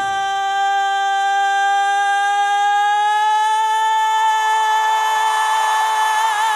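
A woman singing one long, high belted note a cappella, with no band behind it, its pitch creeping slightly upward as she holds it.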